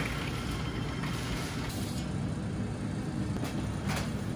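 Steady low mechanical rumble of commercial bakery kitchen equipment, with a few faint knocks.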